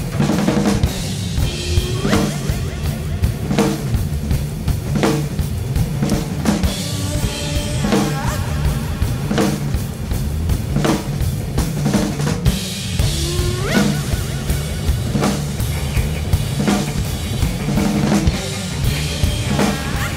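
Two drum kits played together in a driving rock beat, with kick drum, snare hits and cymbal wash, over a rock recording with a steady bass line.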